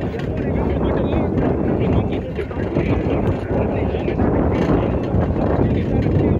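Steady wind rush over the microphone and road rumble from riding along the street, loud and unbroken, with a faint voice-like warble above it at times.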